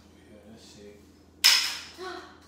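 A cotton T-shirt flicked out sharply to unfold it, giving one loud snap of cloth about one and a half seconds in that dies away quickly, after soft rustling of the fabric being handled.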